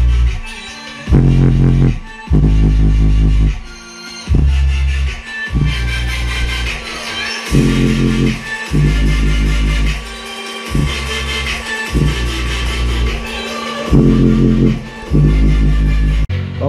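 Bass-heavy electronic music played loud through a small 4-inch subwoofer. The deep bass comes in blocks a second or two long, broken by short gaps.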